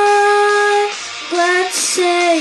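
A boy singing into a handheld microphone: one long held note for about a second, then, after a short dip, a shorter note near the end.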